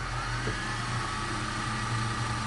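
A motor-like whirring sound effect for fast-forwarding: a steady whine over a low hum and hiss, its pitch rising briefly at the start and then holding.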